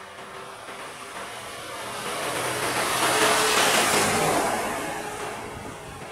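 A vehicle driving past close by: the noise swells to a peak a little past halfway and then fades away.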